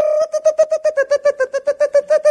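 A man's voice holding one sung note, then chopping it into rapid la-la-la syllables on the same pitch, about eight a second: the childish sing-song of someone blocking his ears so as not to hear.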